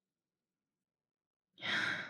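Near silence, then about one and a half seconds in a woman's audible breath, drawn just before she speaks.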